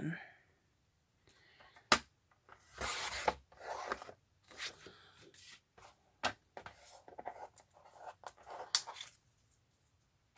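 A sliding paper trimmer cutting manila file-folder card: a sharp click, a short swish as the blade runs through the card, then rustling of the card and more clicks as the clear ruler arm is lifted and set back down.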